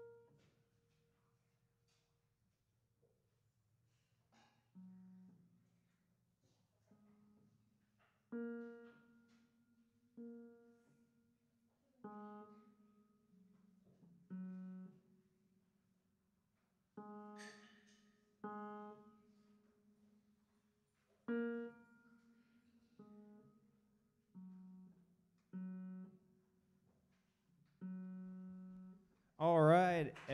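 Piano played slowly, one note at a time, each note left to die away before the next, with a pause of a few seconds early on: a beginner picking out a simple melody.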